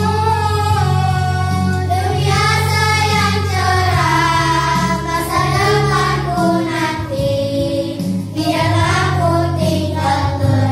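A group of young girls singing a slow song together, one voice through a microphone, over a karaoke backing track with steady bass notes.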